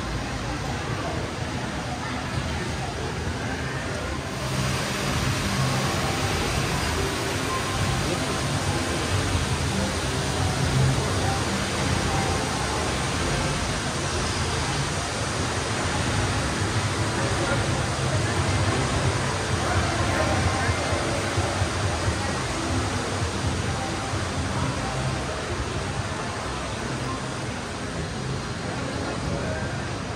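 Casino floor ambience: a steady din of crowd chatter, background music and slot machines, growing a little louder about four seconds in.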